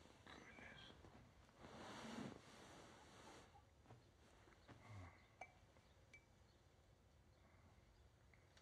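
Near silence: faint room tone, with a soft rustle about two seconds in and a few faint clicks later.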